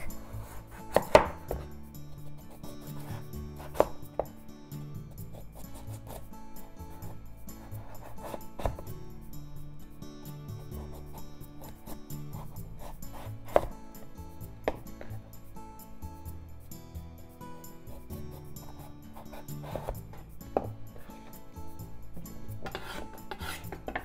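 A chef's knife shaving thick skin off a broccoli stem on a wooden cutting board: scraping and rubbing of the blade through the fibrous stem, with a sharp knock of the knife on the board every few seconds.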